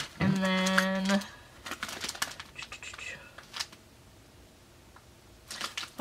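A woman's held "mmm" hum at one steady pitch for about a second, then light clicks and rustles as small bath-product packaging is handled, with a few more clicks near the end.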